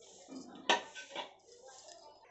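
A steel spoon clinking against a stainless steel bowl of soaked nuts: a few light clinks, the sharpest just before a second in.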